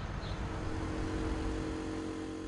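Background ambience: a steady low rumble, with a brief high chirp near the start. About half a second in, a steady hum of several tones joins it.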